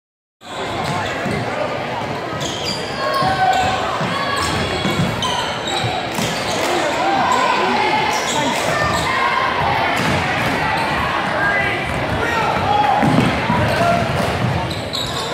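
Basketball being dribbled on a hardwood gym floor during a game, amid crowd chatter and shouting voices that echo in the large hall.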